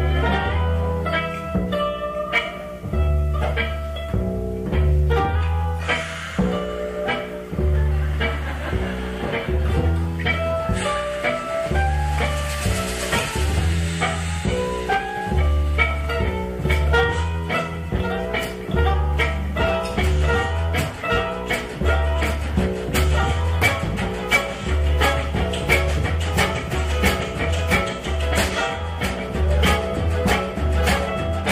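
Acoustic country band playing an instrumental introduction: a plucked upright bass keeps a steady beat under strummed and picked acoustic guitar and other strings. Sharp percussion beats fall in regular time from about halfway through.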